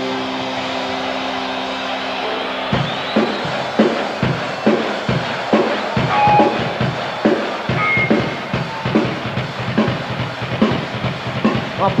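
A sustained chord from the band holds, then cuts off about three seconds in as a rock drum kit takes over alone, playing a steady beat of kick and snare at about three hits a second.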